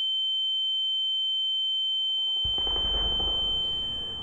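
High-pitched, steady ringing tone used as a film's ear-ringing sound effect, conveying a dazed character. About halfway through, a low rumbling noise comes in beneath it.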